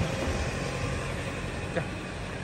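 Engine of a small canvas-covered light truck running with a steady low hum as it drives slowly past and pulls away ahead, growing slightly fainter.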